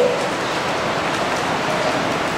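A steady, even hiss of background noise in a pause between words, with no distinct events.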